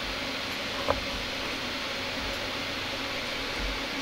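Steady room hiss with one brief blip about a second in.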